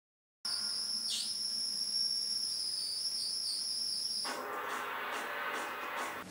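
A thin, high, steady whistling tone that dips briefly in pitch about a second in and wavers a little later. It stops about four seconds in and gives way to a faint hiss.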